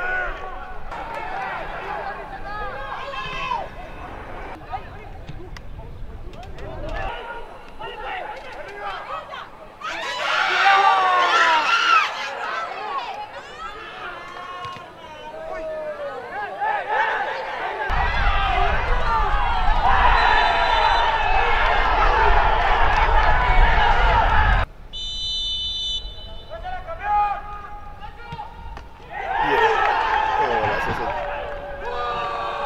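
Match commentary: a man's voice talking continuously over stadium crowd noise. Voice and crowd grow louder for about seven seconds past the middle, then drop off abruptly.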